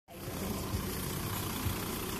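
Car engines idling in a stopped traffic jam: a steady low rumble with a light hiss over it.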